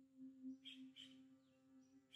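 Faint monochord drone holding one low note with a soft overtone above it, with two brief high chirps under a second in.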